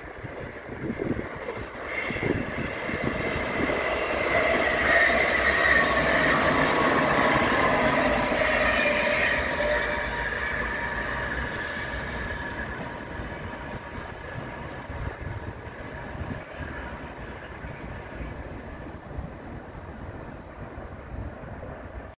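NS ICMm 'Koploper' electric intercity train passing through the station: the sound builds over a few seconds, peaks, then slowly fades as it moves away. A whine from the train drops in pitch as it goes by, over the rumble of wheels on the rails.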